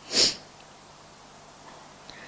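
A single short sniff by a person close to a podium microphone, about a quarter second long just after the start, then quiet room tone.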